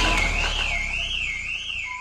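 Channel intro music fading out, with a high warbling tone that rises and falls about twice a second. A steady tone comes in near the end.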